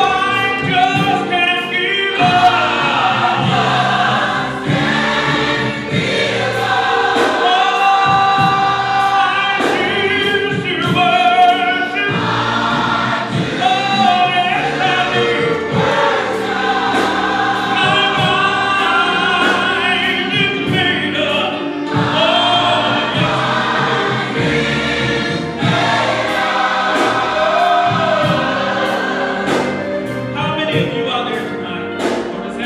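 Gospel choir singing with a live band, drums and cymbals keeping a steady beat under the voices.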